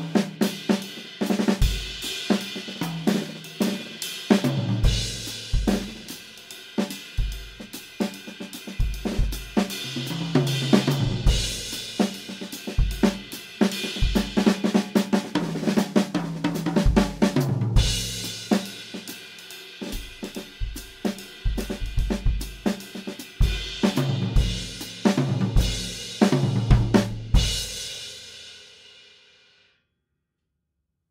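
Acoustic drum kit playing a shuffle/swing groove on bass drum, snare, hi-hat and cymbals, broken by quick tom-and-snare fills that resolve back into the groove. Near the end the playing stops and the last cymbal rings out and fades away.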